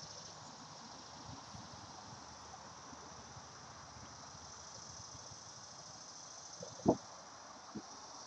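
Steady high-pitched chorus of summer insects in the trees, with a single dull thump near the end.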